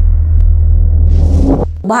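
Deep, loud bass rumble of a news-bulletin transition sound effect, with a rushing whoosh swelling about a second in. It cuts off abruptly near the end as a woman's voice begins.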